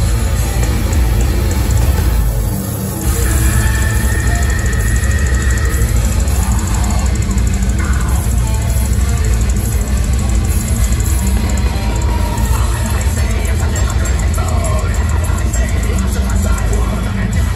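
Loud deathcore band playing live, with heavy distorted guitars and drums filling the hall. The music drops out briefly about two seconds in, then the full band comes back in.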